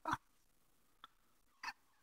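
Near silence broken by a faint click about a second in and a short breathy laugh from a man near the end.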